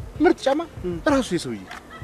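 A man's voice speaking in Amharic with animated rises and falls in pitch.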